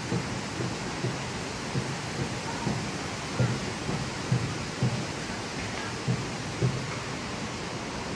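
A steady rushing noise with soft low thumps at uneven intervals of about half a second to a second.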